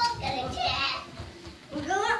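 Young children's high voices chattering, dying down about a second in.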